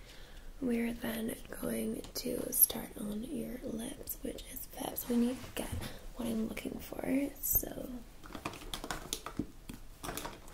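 A woman's soft voice murmuring for several seconds, the words not made out. Near the end, light rustling and clicks close to the microphone as the camera is handled.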